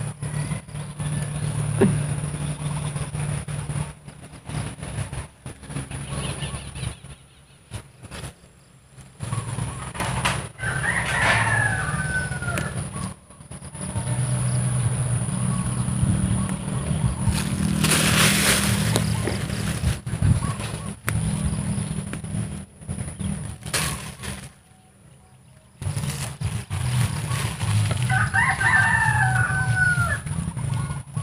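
A rooster crowing twice, once about eleven seconds in and again near the end, over low rustling and handling noise from walking through weeds.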